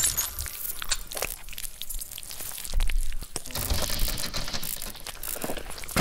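Sound effects for an animated logo intro: a run of crackles and clicks, with low booms about three and four seconds in.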